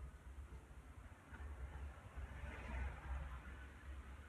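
Faint rustling of a paintbrush working paint onto watercolour paper. The rustle swells in the middle, over a low steady hum.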